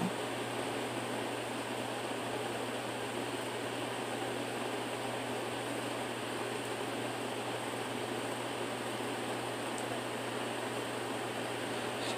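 Steady background hiss with a low hum running under it, unchanging throughout, with no distinct events.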